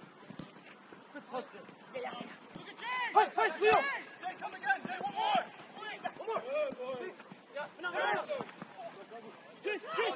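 Footballers shouting and calling to one another across an outdoor pitch, the words unclear, starting about three seconds in, with a few sharp thuds of the ball being kicked.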